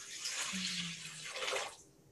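Liquid poured from a glass into a metal pot as a libation: a steady splashing stream that stops shortly before the end.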